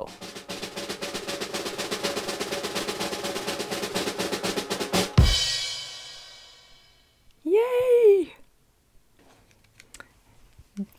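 Spinner-wheel app's sound effect: a rapid, even drum roll of ticks for about five seconds while the wheel turns, ending in a sharp crash that rings out and fades over about two seconds as the wheel stops.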